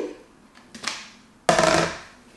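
An emptied plastic basin set down on a table with one sudden hollow knock about one and a half seconds in, after a fainter short sound near the first second.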